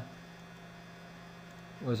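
Steady low electrical hum, like mains hum picked up by the recording, during a pause in speech; a man's voice resumes just before the end.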